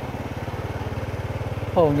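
Motorcycle engine running steadily at low speed, a low even pulsing note, as the bike rolls slowly along.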